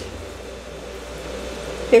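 Steady low hiss of background noise with a faint hum, and no distinct events.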